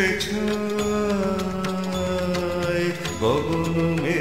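A song, a singer holding one long note over instrumental accompaniment, then gliding up to a new note about three seconds in.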